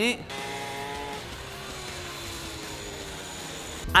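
Small mini-motorbike motor whirring, its pitch slowly sinking, the sound of a slow toy-like mini bike.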